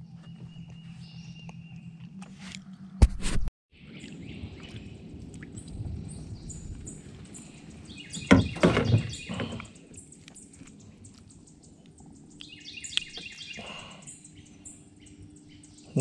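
Outdoor swamp ambience with birds chirping over a steady low background hum. There is a sharp knock about three seconds in and a sudden drop-out just after it. Brief louder sounds come about eight and thirteen seconds in.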